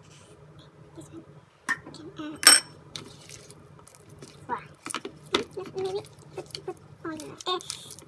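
A spatula stirring thick cake batter in a mixing bowl: scattered scrapes, knocks and clinks against the bowl, with one sharp ringing clink about two and a half seconds in.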